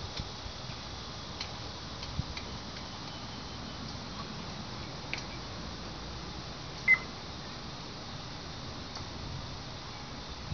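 A bird's single short, high chirp about seven seconds in, dropping slightly in pitch, over a steady background hiss with a few faint ticks.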